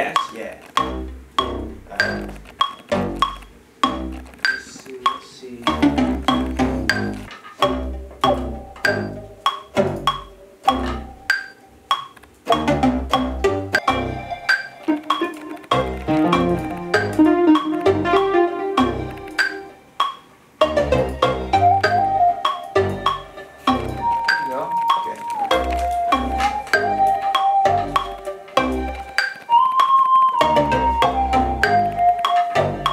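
A hip-hop beat in progress playing back from music production software: a steady drum pattern of sharp hi-hat ticks and deep bass hits, with a keyboard melody played over it that comes to the fore about halfway through.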